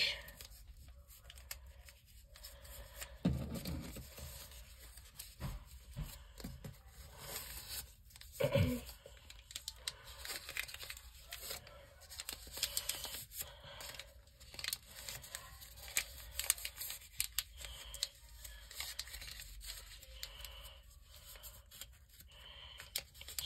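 Lined notebook paper rustling and crinkling as a narrow strip is folded and wrapped around a paper latch, with small crackles throughout. Two dull knocks stand out, about three and eight and a half seconds in.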